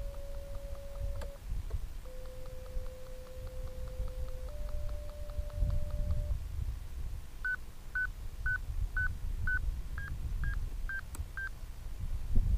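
Audio variometer tones from an RC glider's transmitter: a steady low tone that breaks off and steps slightly up and down in pitch, then, from a little past halfway, short higher beeps about two a second, the signal that the glider is climbing in lift. Wind on the microphone underneath.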